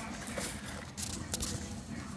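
A hand rummaging through a pencil case of pencils and school supplies, with a few light clicks and knocks as the items are handled.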